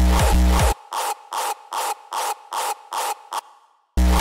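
Hardstyle track playing back in a DAW. The full mix with its heavy distorted kick cuts off under a second in, leaving only a noisy, rasping layer pulsing about three times a second, with no kick or bass. That layer fades away, and the full mix with its kick comes back at the very end.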